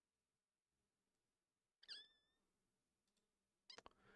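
Near silence, broken about two seconds in by one short high squeak that dips in pitch and then holds, and near the end by a few quick clicks.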